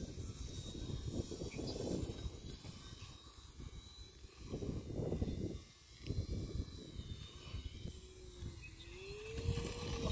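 Wind buffeting the microphone in gusty low rumbles, over the faint hum of a small radio-controlled plane's motor and propeller, which rises in pitch near the end.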